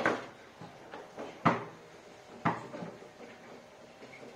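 Foosball in play: the plastic ball struck by the rod figures and knocking against the table, with the rods clacking. Sharp knocks at the start, about a second and a half in and about two and a half seconds in, with lighter taps between.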